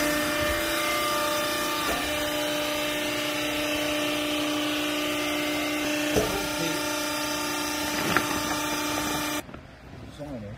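Vertical hydraulic baler's electric motor and hydraulic pump running with a steady hum, with a few light knocks. The hum cuts off abruptly near the end.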